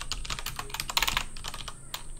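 Computer keyboard being typed on: a quick, uneven run of key clicks.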